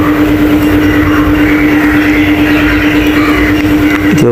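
A machine running steadily: a constant droning hum at one pitch over a dense, even rushing noise.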